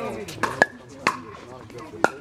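Pickleball paddles clacking together, three sharp hard taps with a short ring within the first second or so, over people talking.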